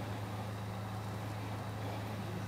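A steady low hum with no change in level, like an engine idling or an electrical drone.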